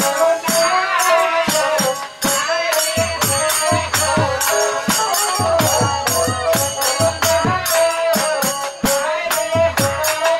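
Live folk music for a Manasa pala performance: a steady held note under a wavering melody, with fast jingling percussion throughout and low drum beats coming in about three seconds in.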